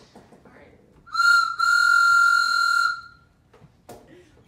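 A whistle blown twice at one steady high pitch: a short toot, then a longer held note of about a second and a half.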